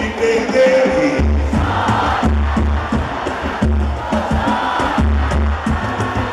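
A live pagode band plays loudly through the PA, with a heavy bass beat and busy percussion. The crowd sings and shouts along.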